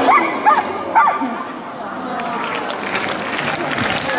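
Dog barking: three short, high-pitched barks in quick succession within the first second or so.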